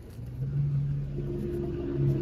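An engine running with a steady low hum that comes in about half a second in and holds at one pitch.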